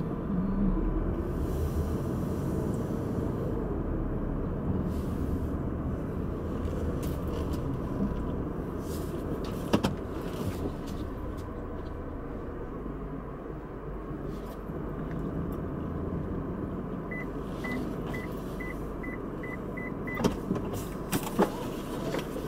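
Inside a car's cabin while it drives slowly through a parking lot: a steady low rumble of engine and road. About ten seconds in there is one sharp click, and near the end comes a run of about seven short, evenly spaced high beeps, roughly three a second.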